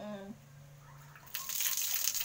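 Water poured from a plastic dipper over the face and splashing down, rinsing off soap lather; the pouring starts suddenly about one and a half seconds in.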